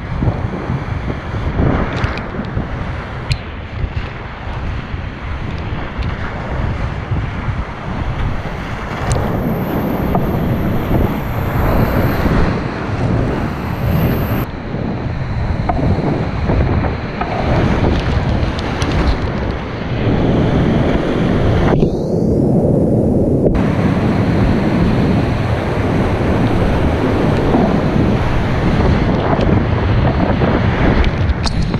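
Whitewater rapids rushing loudly around a kayak, heard close up on a body-mounted action camera, with wind noise buffeting the microphone and sharp splashes scattered through it. The water grows louder in the second half as the boat drops into the big foaming slide, and the sound goes briefly muffled around two-thirds of the way through.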